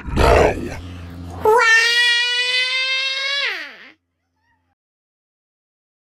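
A brief loud noisy burst, then a high-pitched cartoon-style wail held for about two seconds that slides down in pitch as it ends.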